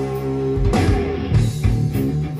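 Rock recording playing through hi-fi speakers driven by a vintage Sansui 4000 stereo receiver: an instrumental riff of electric guitar and bass, with drum hits coming in about a third of the way through. The recording is made with a smartphone, which lowers its quality.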